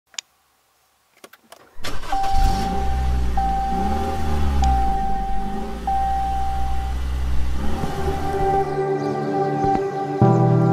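Push-button start of a Ram pickup: a click, then the engine catches about two seconds in and runs with a low steady rumble. Over it a dashboard warning chime sounds as a steady tone, repeated four times. Music comes in near the end.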